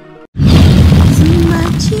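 Soft plucked music cuts off, and after a brief gap a loud, deep cinematic boom hits and rumbles on, the start of an intro sting. A singing voice comes in over it about halfway through.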